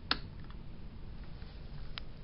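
A sharp click just after the start and another right at the end, with a low, uneven rumble in between.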